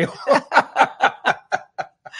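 Laughter in response to a joke: a run of short pulses, about four a second, fading toward the end.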